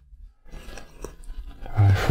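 A quiet room with faint rustling and a single click about a second in. A man's voice starts again near the end.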